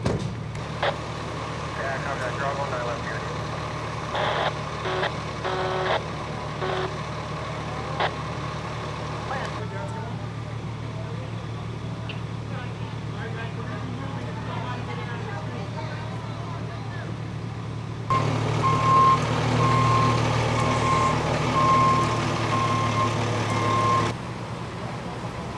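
Diesel engines of parked emergency vehicles idling with a steady low hum. About three-quarters of the way through, a heavier engine grows louder and a vehicle's reverse alarm starts beeping repeatedly as it backs up.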